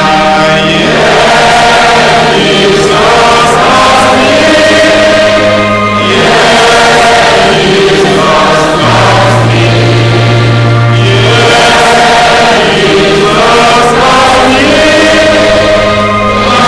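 A choir singing a church song, with long held low accompanying notes underneath that change every few seconds.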